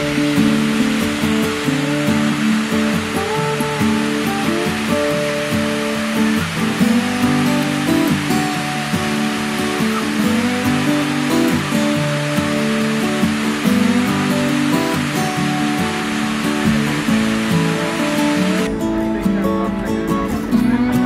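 Acoustic guitar music playing with plucked, sustained notes, over a steady loud rushing noise that stops suddenly near the end.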